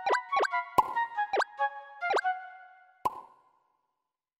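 Short cartoonish music sting: about six bubbly pops, each a quick rise in pitch, with ringing notes between them, the last pop about three seconds in.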